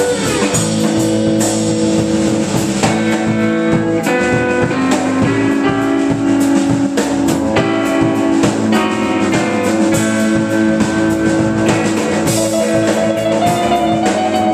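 Live rock band playing an instrumental passage: electric guitar playing sustained lead notes over bass guitar and a drum kit keeping a steady beat.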